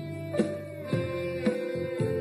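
Instrumental karaoke backing track with no vocal: strummed acoustic guitar chords on a steady beat, about two strums a second.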